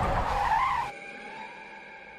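Car tyres squealing in a skid, with a wavering, rising screech that cuts off suddenly about a second in. A quiet sustained tone follows.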